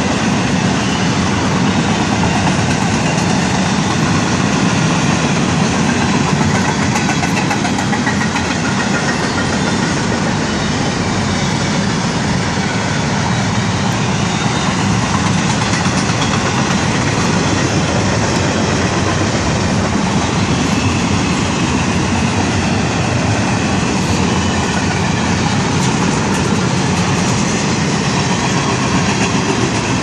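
CSX intermodal freight train's cars rolling past, a steady loud rumble and clatter of wheels over the rails with no let-up.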